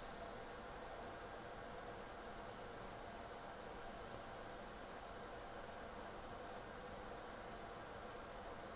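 Steady low background hiss with a faint hum: the recording's room tone between spoken lines.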